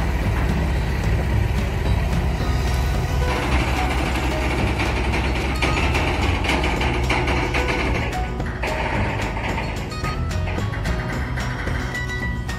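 Heavy-haulage truck's diesel engine running steadily as it slowly pulls a long multi-axle trailer with an oversized load, mixed with background music.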